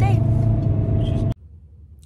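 Steady low rumble of a car heard from inside the cabin, with a faint hum under it. It cuts off abruptly about a second and a half in, leaving quiet room tone.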